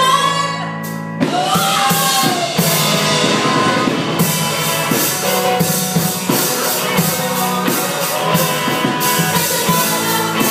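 Live rock band playing: a woman's lead vocal over electric guitar, keyboard and drum kit. The drums drop back for about the first second, then come back in with steady cymbal hits.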